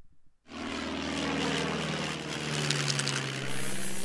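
Steady drone of a propeller aircraft engine, starting about half a second in, with a hiss joining near the end.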